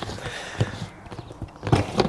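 Plastic gamma seal lid being screwed onto the threaded ring of a polypropylene wash bucket, giving a few light plastic clicks and knocks as it is turned.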